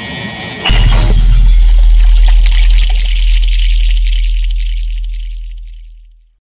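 Edited-in cinematic transition sound effect: a sudden crash of noise, then about 0.7 s in a very deep boom with a crackling, glassy high shimmer. Both ring out and fade away over the following five seconds.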